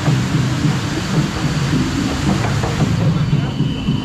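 A round river-rapids ride raft being carried up the slatted conveyor lift, making a steady, loud, low mechanical rumble and rattle.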